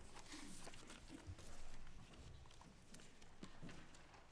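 Faint, scattered knocks, shuffles and light footsteps of people settling into their seats.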